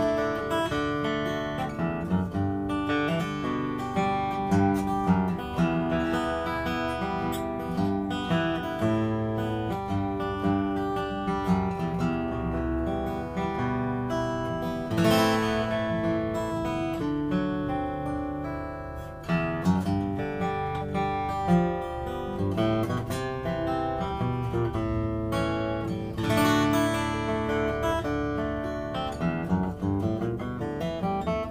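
Collings 12-fret dreadnought acoustic guitar with a Sitka spruce top and phosphor bronze strings, played with a pick: a run of picked and strummed chords with notes left ringing.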